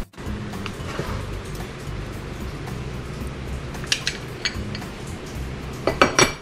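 Background music with steady low notes, and a few light clinks about four seconds in and again near the end.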